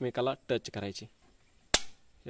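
A single sharp electric spark crack, about 1.7 s in, as a capacitor wire touches a live fuse-holder terminal in a submersible-pump starter panel.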